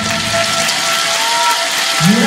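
Audience clapping as the dance music stops: a dense, even patter of many hands.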